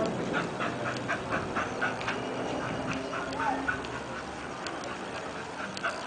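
A dog barking in the distance, a rapid string of short barks about four a second that thins out after the first couple of seconds, over a steady low background noise.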